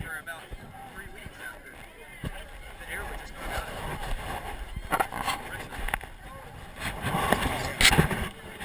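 People talking in the background, mixed with knocks and rubbing from a jostled action camera; the loudest sound is a brief burst just before the end.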